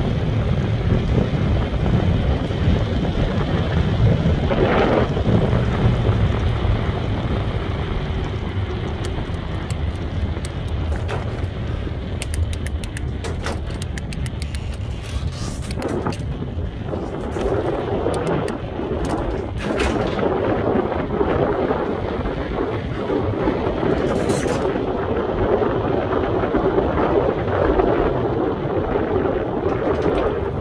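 Wind buffeting a helmet-mounted phone's microphone in a steady low rumble while walking along a marina's floating dock, with scattered sharp clicks and knocks through the middle stretch.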